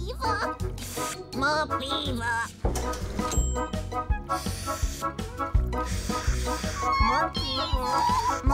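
Gentle children's cartoon background music with a steady bass beat. Short, squeaky, wordless creature babbles come over it a few times.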